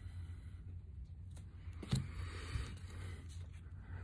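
Quiet handling of tarot cards as one card is swapped for the next: a soft click about two seconds in and a faint brushing of card on card, over a low steady room hum.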